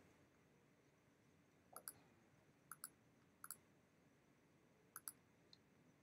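Faint computer mouse clicks: four quick double clicks spread a second or so apart, with near silence between them.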